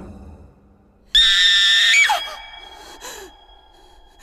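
A woman's shrill scream. It breaks in suddenly about a second in, very loud, holds for under a second and drops in pitch as it ends. A faint high tone rings on after it.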